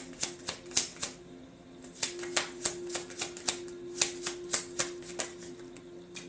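A deck of tarot cards shuffled by hand, a quick run of light card slaps and clicks that pauses about a second in and starts again about two seconds in, stopping a little after five seconds.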